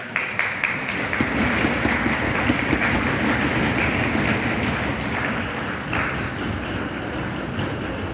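Audience applauding in a hall: many hands clapping in a loud, dense, steady clatter that starts abruptly.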